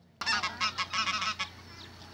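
A flock of white domestic geese honking: a quick run of short honks that starts just after the beginning and dies away after about a second and a half.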